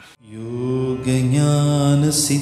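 A devotional mantra chant begins about a third of a second in, with long held notes that step up in pitch about a second in.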